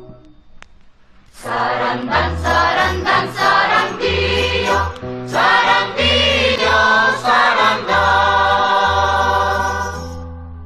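One Christmas carol fades out, and after about a second and a half of near quiet the next begins: a choir singing over a steady, repeated bass line.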